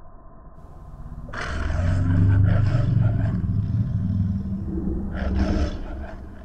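A young man roaring loudly at close range. One long roar starts about a second in, and a shorter second roar comes near the end.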